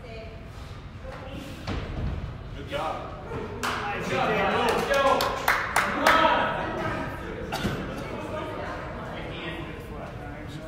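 Several people's voices calling out in a large, echoing gym hall, loudest between about four and six seconds in, with a few thuds among them.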